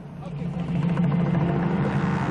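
A steady engine-like drone under a rushing hiss, building up over the first second, as a jet of water or extinguishing agent is sprayed onto a burning car.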